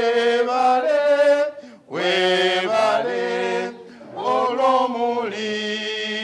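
A small group of voices singing a chant together, unaccompanied, with no instruments. They sing in held phrases a couple of seconds long, with brief breaks between them.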